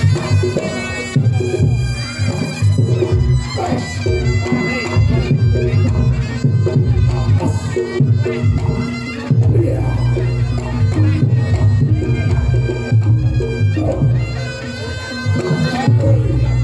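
Reog Ponorogo gamelan music: a slompret shawm plays a nasal, wailing melody over a steady layer of drums and gongs.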